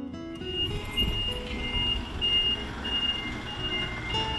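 Light truck's reversing alarm beeping about three times a second, alternating between a higher and a lower tone, over the low run of the truck's engine. The tail of music cuts off in the first moment.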